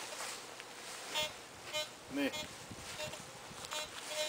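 Teknetics T2 metal detector giving a few short electronic beeps while it is being set up for ground balancing.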